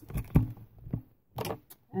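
A few short clicks and rustles of craft supplies and packaging being handled on a desk, the loudest about a third of a second in.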